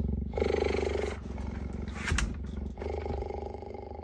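A cheetah purring close to the microphone, a steady low pulsing that swells in two louder stretches with its breaths. There is a short sharp click about two seconds in.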